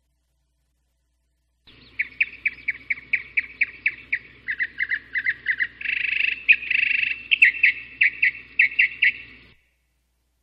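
Recorded birdsong played as a sound effect in an animation demo: a rapid series of high chirps, four or five a second, with two brief trills in the middle. It starts a couple of seconds in and stops shortly before the end.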